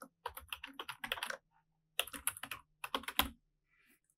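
Typing on a computer keyboard: a quick run of keystrokes, a short pause around the middle, then a second run that stops shortly before the end.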